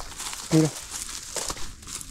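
Dry, dead tule stalks crackling and crunching underfoot, an irregular crackle with a few sharper snaps.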